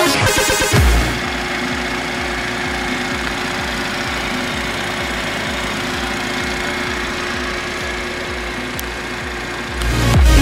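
BMW 330i's 2.0-litre TwinPower Turbo four-cylinder engine idling steadily, taking over from music about a second in.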